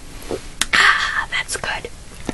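A short, breathy whispered voice with a few light clicks.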